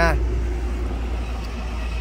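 Steady low rumble and hiss of road traffic, easing slightly in level, with the end of a man's word at the very start.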